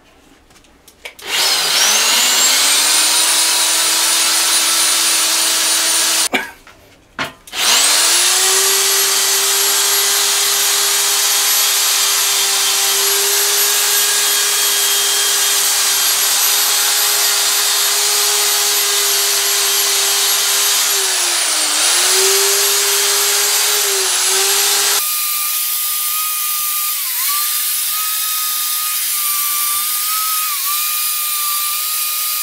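Electric drill with a wire cup brush spinning up about a second in, stopping briefly near six seconds, then restarting and running steadily as it scrubs old paint off a steel bicycle frame. The motor dips in pitch a few times under load, and near the end the sound turns to a thinner, higher tone.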